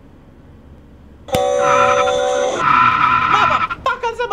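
Car tires screeching in a sudden, loud skid that starts just over a second in, holding steady pitched squeals before wavering and falling in pitch near the end.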